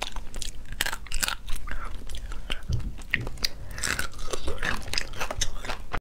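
Close-miked cracking and crunching of braised crayfish shell being broken open and bitten, with chewing in between: many irregular sharp crackles.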